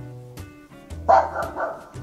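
Recorded dog barking played through an Amazon Echo Dot smart speaker in answer to a "talk like a dog" request: a bark about a second in, over steady background music.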